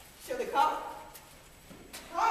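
A single short spoken call from a person, about half a second in.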